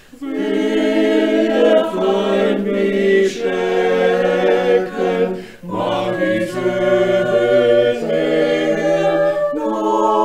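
A group of voices singing a hymn in church, held notes in several parts, in phrases with short breaks for breath about halfway through and near the end.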